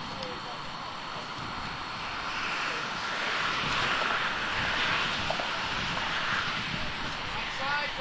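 Rushing noise of a passing vehicle, swelling from about two seconds in, loudest around the middle, then fading.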